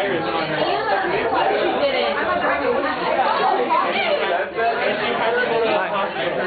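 Indistinct chatter of several voices talking over one another, steady throughout.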